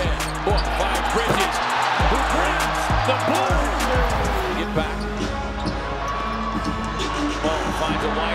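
A basketball bouncing on a hardwood arena court, with sharp repeated impacts, over background music with a steady deep bass.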